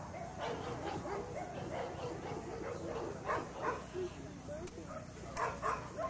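A Rottweiler barking: two pairs of short barks, one a little past halfway and one near the end.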